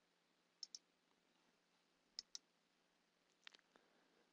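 Computer mouse clicking against near silence: two quick pairs of clicks, one just over half a second in and one just after two seconds, then a single faint click near the end.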